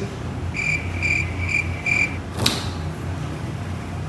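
Four short, evenly spaced high-pitched beeps, then a sharp click about two and a half seconds in as a refrigerator door is pulled open, over a steady low hum.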